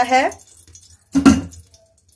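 A single short metallic clatter of kitchen utensils about a second in, like a spoon or pot knocked against the pan.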